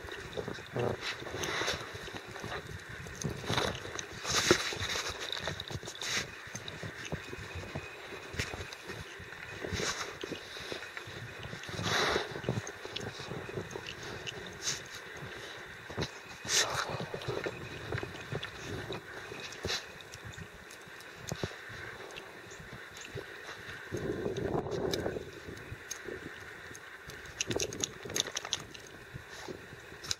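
Irregular crunching of paws and feet in snow as Great Dane puppies romp, mixed with rustle and bumps from a handheld camera. A short dog vocalization comes about four-fifths of the way through.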